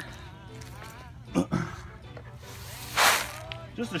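Hands handling a plastic tub of expanded clay pebbles: a couple of light knocks, then a brief rustling swish about three seconds in.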